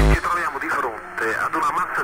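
A sampled spoken voice in a speedcore track, sounding thin with little bass. The fast pounding kick drum cuts off just as the voice begins.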